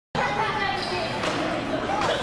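Box lacrosse game in an echoing indoor arena: players and spectators shouting over one another, with a sharp knock a little over a second in.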